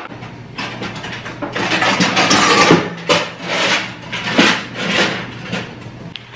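Parchment paper and its cardboard box being handled: irregular rustling and scraping in a string of bursts, loudest a couple of seconds in.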